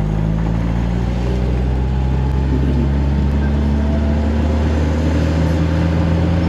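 Old carbureted engine of a Tofaş car running steadily under way, heard from inside the cabin. The mixture has just been adjusted by the mechanic, who says it is fine now.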